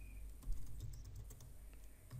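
Computer keyboard typing: a run of faint key clicks, with one louder keystroke about half a second in.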